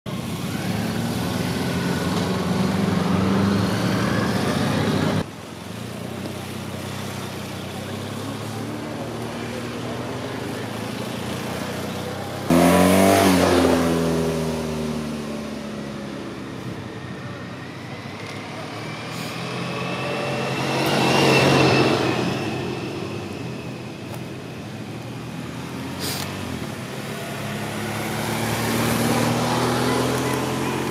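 Race escort motorcycles and vehicles going by on the road, engines rising in pitch as they approach and falling as they pass. The loudest is a sudden close pass about twelve seconds in, with the pitch dropping quickly; another swells and fades about twenty-one seconds in.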